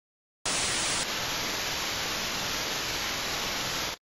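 Steady static hiss that starts abruptly about half a second in and cuts off suddenly just before the end, with a slight change in its tone after about a second.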